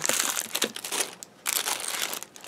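Clear plastic bags of craft embellishments crinkling as they are handled and moved about, in two stretches with a short pause a little over a second in.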